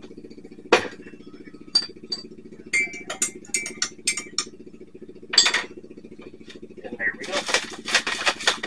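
A spoon stirring coffee in a ceramic mug, clinking against its sides in a quick run of taps, with a few single clinks before it and one louder clink after. A rustle near the end, over a steady low hum.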